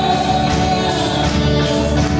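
Live worship band playing a song: a woman singing lead into a microphone over electric guitar, bass guitar and keyboard.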